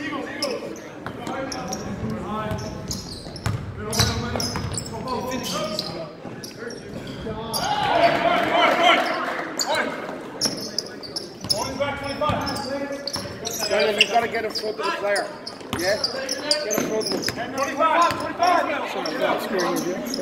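Basketball game in a gymnasium: a ball bouncing on the hardwood floor as it is dribbled and passed, with players' footfalls and shouts on court.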